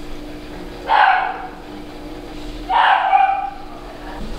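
A dog barking twice: one bark about a second in and another near three seconds.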